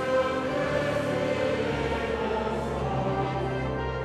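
A congregation and choir singing a Dutch hymn together in held, sustained notes, with the words "prijst de Geest, die in ons woont" and then "prijst de Koning der heerlijkheid". The sound carries the reverberation of a large church.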